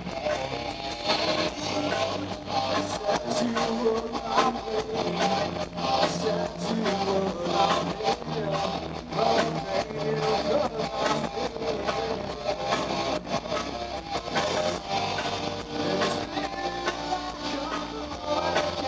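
A rock band playing live, with electric guitars over bass guitar and a drum kit keeping a steady beat.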